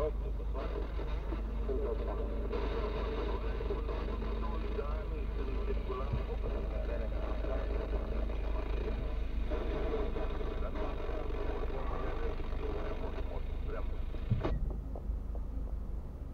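Speech heard inside a stationary car's cabin over the low, steady hum of the engine idling. The voices cut off suddenly with a click near the end, leaving only the idle hum.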